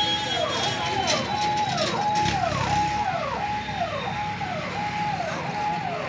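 An electronic vehicle siren repeating a note that holds and then drops, a little faster than once a second, over the low rumble of engines and traffic.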